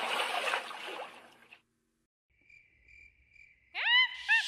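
Cartoon night-time sound effects between songs: a wash of sound fades out in the first second and a half, then a faint, thin cricket chirping, and just before the end a sudden loud rising cry.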